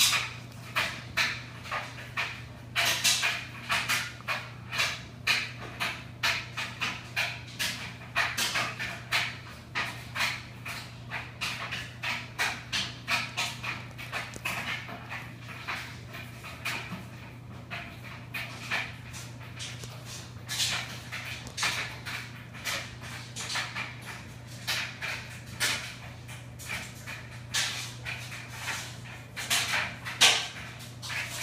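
Rapid rhythmic panting, about three breathy puffs a second, over a steady low hum.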